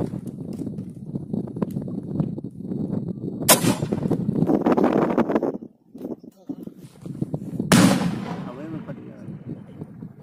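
A rifle grenade fired from a 7.62 mm SLR: one sharp shot about three and a half seconds in, then a second blast about four seconds later, the grenade bursting downrange, each trailing a long echo across the valley.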